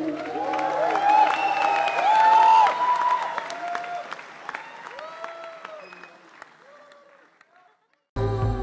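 Concert audience applauding and cheering with long rising-and-falling whoops, loudest in the first three seconds, then dying away to a fade-out near the end.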